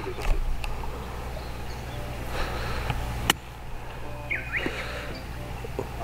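A golf wedge striking the ball once on a short lofted pitch: a single sharp click about three seconds in, over a steady low rumble.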